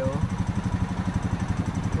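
Brand-new, zero-mile Honda Rancher 420 ATV's single-cylinder four-stroke engine idling steadily in neutral, with an even, rapid pulse.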